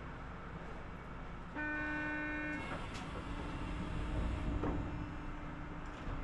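Steady low rumble inside a standing Osaka Metro New Tram car. About one and a half seconds in comes a single toot, a steady tone lasting about a second that cuts off sharply. A fainter steady hum follows.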